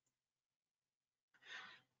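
Near silence, with a faint short breath intake near the end, just before speech resumes.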